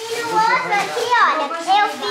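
Several people talking over one another, a child's voice among them.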